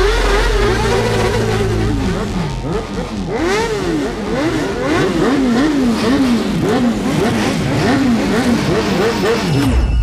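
Motorcycle engine revving hard during a burnout. It holds high revs for about two seconds, then rises and falls repeatedly, about twice a second, and cuts off suddenly near the end.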